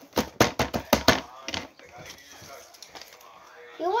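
Scissors snipping paper: a quick run of about seven sharp snips in the first second and a half, then quieter paper handling.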